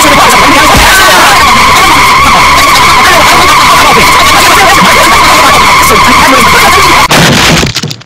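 Car tyres screeching in one long, loud skid as the car swerves out of control, cutting off about seven seconds in.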